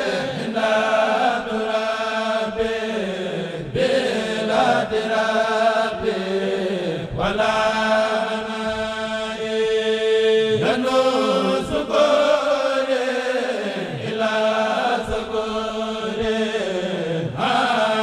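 A kurel of male voices chanting a Mouride xassida in unison, the melody rising and falling in long sung phrases, with one long held note about halfway through.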